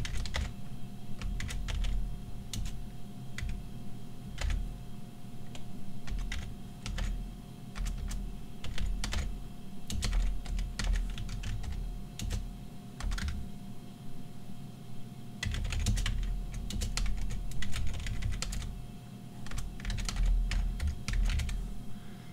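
Typing on a computer keyboard: irregular keystrokes in short runs with brief pauses between them.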